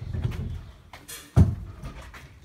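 A single sharp knock about one and a half seconds in, over a low rumble.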